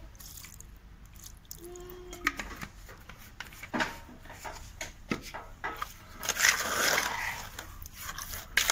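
Liquid latex poured into a bucket of wet cement mortar, then a trowel stirring and scraping the mortar against the plastic bucket. A few sharp knocks come first, and the scraping is loudest from about six seconds in.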